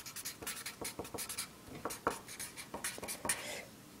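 Felt-tip marker writing on a sheet of paper: a run of short, faint strokes as the letters are drawn.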